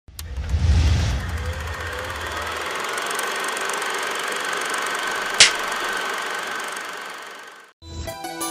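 Intro sound effects: a low rumble in the first two seconds, then a steady mechanical-sounding whir with a faint held tone, broken by one sharp click about five and a half seconds in, fading out just before the end.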